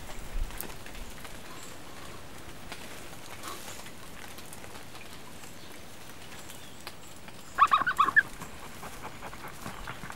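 Steady hiss of monsoon rain in forest. Near eight seconds in, a bird gives a quick run of short, loud calls.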